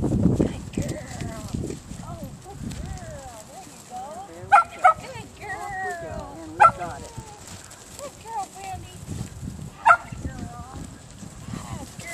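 Sheep bleating repeatedly, with wavering calls overlapping, while they are pushed around the pen by a herding dog. A few short, sharp, louder calls stand out about four and a half, six and a half and ten seconds in.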